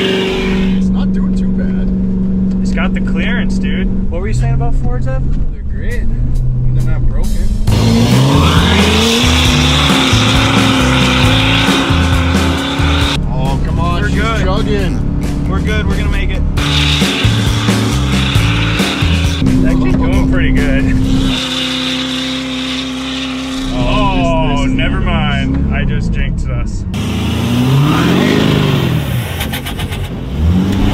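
Ford F-350 pickup's engine revving as the truck ploughs through deep snow, with rising and falling pitch, mixed under background music with a steady beat.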